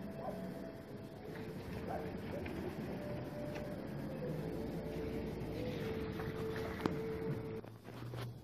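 A car's engine running close by, a steady hum that drops away shortly before the end.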